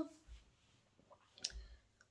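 A quiet pause between a woman's spoken sentences, with one faint, short click about one and a half seconds in.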